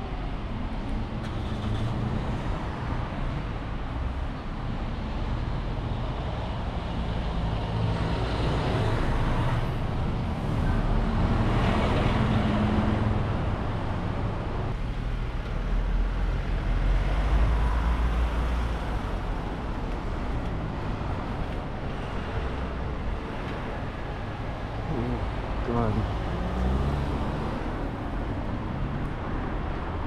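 Road traffic heard from a moving bicycle: cars passing close by in the next lane, swelling and fading a few times, over a steady low rumble.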